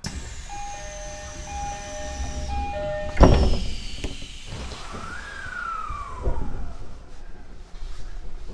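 Commuter train door chime, two alternating tones repeated, ending in a loud thud about three seconds in as the doors shut. Then the train's traction motors whine, rising and then falling in pitch, as it starts to pull away.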